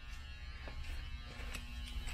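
A low, steady buzz and hum of background noise, with a few faint ticks.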